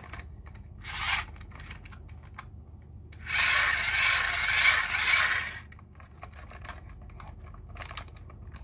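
Hands rubbing and scraping against a hard plastic toy with gear-shaped wheels: a short scrape about a second in, then a louder one lasting a couple of seconds from about three seconds in, with light plastic clicks between.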